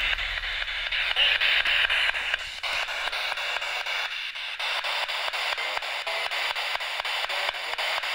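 Spirit box sweeping through radio stations: hissing static chopped into quick, evenly spaced steps several times a second.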